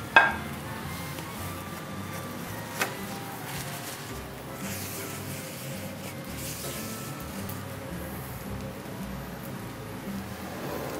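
Quiet background music, with a sharp knock of kitchen utensils right at the start and a smaller one about three seconds in.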